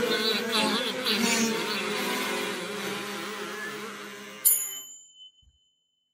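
Kazoo buzzing a wavering tune that fades over the last seconds. About four and a half seconds in comes a single bright ringing hit, and then the sound stops.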